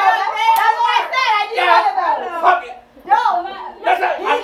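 Indistinct voices of several people talking loudly over one another in a room, with a brief sharp click about half a second in.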